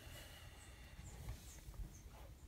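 Near silence: faint room tone with a low rumble and a few very faint small ticks.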